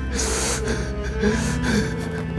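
A man's gasping, sobbing breaths, two of them, about a second apart, over steady background music.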